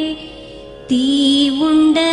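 A slow Tamil song: a solo voice sings long held notes. It drops away briefly and comes back in with a new phrase about a second in.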